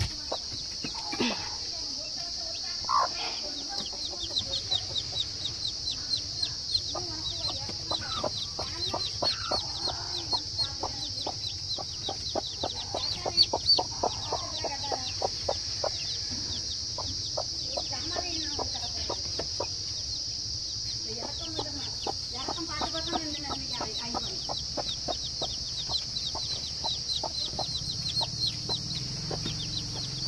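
Domestic chicks peeping rapidly and continuously while a hen clucks low now and then, over a steady high hiss.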